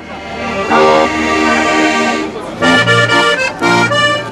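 A Steirische Harmonika (Styrian diatonic button accordion) playing a tune in full sustained chords. It fades in at the start, pauses briefly a little past halfway, then goes on in shorter chords.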